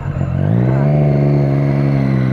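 Motorcycle engine revved: the pitch climbs over the first half second, then holds steady at high revs.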